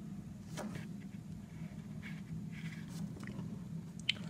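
Faint clicks and light handling noise from small electronic components and a soldering iron being worked by hand on a circuit, over a steady low hum.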